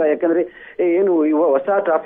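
Speech only: a man's voice reporting over a telephone line, thin and cut off above the middle range.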